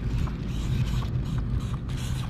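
Felt-tip paint marker rubbing and creaking on a painted wall as letters are drawn, over a steady low rumble.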